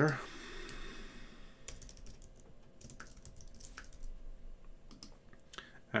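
Computer keyboard typing: short, scattered key clicks.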